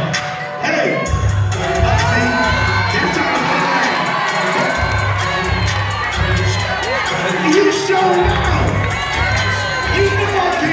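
Audience cheering and shouting over DJ dance music with a heavy bass beat; the bass comes in about a second in and drops out briefly twice.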